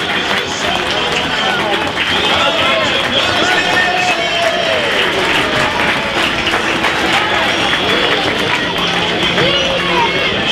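Football crowd noise as the teams walk out: indistinct voices from the stand mixed with music and a little clapping.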